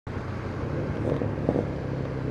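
Honda CBF500 parallel-twin motorcycle engine running steadily as the bike rides in traffic, with a single brief knock about one and a half seconds in.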